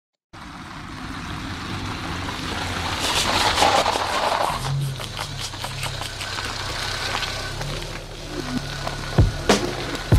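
A car driving on a dirt road with tyre and engine noise that swells and fades as it goes by, with music coming in underneath. A few sharp hits near the end.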